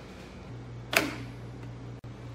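Quiet room tone with a steady low hum, and one sharp click about a second in.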